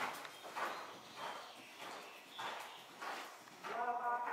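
Horse cantering on the dirt footing of an indoor arena, hoofbeats coming in a steady rhythm of about one stride every 0.6 seconds.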